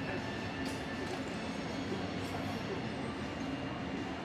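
Steady, even background rumble at a constant level, with faint voices murmuring in it.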